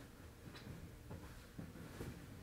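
Faint rustling of clothing and the padded floor mat as a person shifts on it, with a few soft brushes over quiet room tone.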